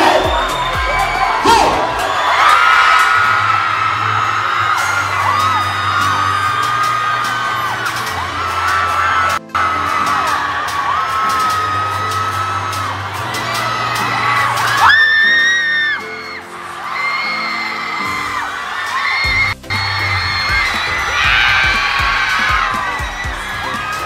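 Music with a steady bass line over a gym crowd cheering and screaming. The sound drops out briefly twice.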